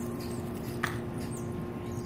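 Steady outdoor background hum with a few constant low tones and faint high chirps, broken by a single sharp click just under a second in.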